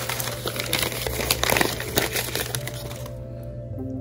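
Crumpled packing paper crinkling and rustling as a glass dish is unwrapped by hand, stopping about three seconds in, over quiet background music.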